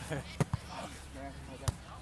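A volleyball being struck during play: sharp slaps of the ball off players' arms and hands, two close together about half a second in and another near the end.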